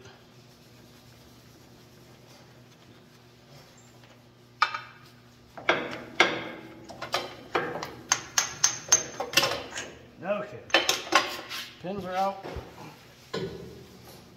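Hand tools and steel parts clinking and clanking at a John Deere 8650's three-point hitch while a lift assist cylinder is unbolted. After about four and a half quiet seconds comes a long run of sharp, irregular metallic clinks, some of them ringing.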